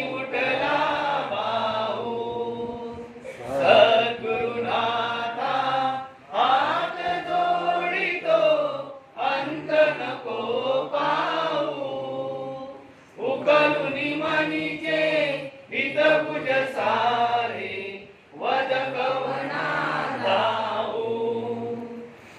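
A group of devotees chanting a Hindu devotional prayer in unison, in phrases of a few seconds with short pauses between.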